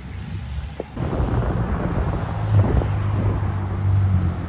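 Wind buffeting a phone's microphone, a loud, rough low rumble that starts about a second in and carries on.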